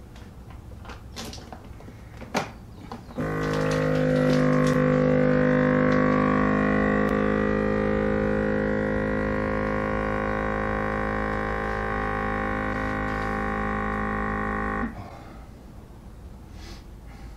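Countertop vacuum sealer: a few clicks as the lid is pressed shut, then its pump runs with a loud, steady hum for about twelve seconds, easing slightly in level, and cuts off suddenly near the end.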